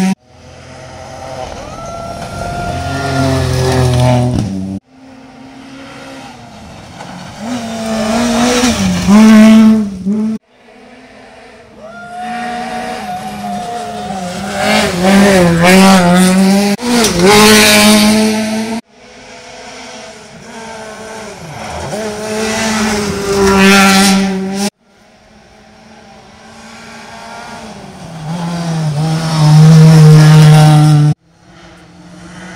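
Rally cars, among them a Ford Fiesta and a Peugeot 208, running at full throttle along a gravel stage, five passes in a row. In each pass the engine note climbs and grows louder as the car approaches, with gear changes, and then cuts off abruptly at the edit to the next car.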